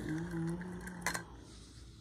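A person's voice making a faint, steady hum on one pitch for just over a second, with a light click about a second in.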